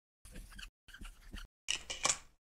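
Dry-erase marker writing on a small whiteboard tile, heard as three short bursts of scratchy strokes. The last burst, near the end, is the loudest.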